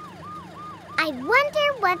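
Cartoon police-car siren wailing quickly up and down, about three times a second. A voice starts talking over it about halfway through.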